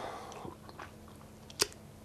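A pause between a man's words: quiet room tone with faint mouth clicks, and one sharper click, a lip smack, about one and a half seconds in.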